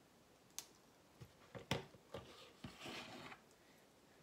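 Small plastic clicks and handling taps as Lego minifigure pieces are fitted together, about half a dozen spread over a few seconds, the loudest just before two seconds in. A short rustle follows about three seconds in.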